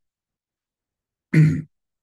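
A man clears his throat once, briefly, about a second and a half in.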